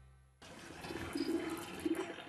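Background music fades away, then less than half a second in, outdoor ambient sound cuts in: an even noisy hiss with scattered light clicks and scuffs.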